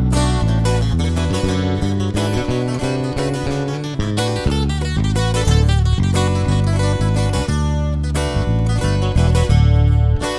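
Live band playing an instrumental break between sung verses: plucked acoustic guitar runs over a bass line that steps from note to note.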